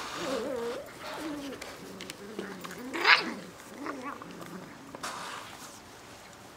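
Bernese Mountain Dog puppies whining and crying in wavering pitches as they play, with one louder, higher cry about three seconds in.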